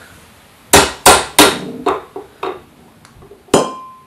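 Claw hammer tapping the new timing pulley onto the steel RA axis shaft of a Skywatcher NEQ6 mount held in a vise: three sharp metal strikes about a second in, then a few lighter taps. A sharp metallic clink that rings briefly comes near the end.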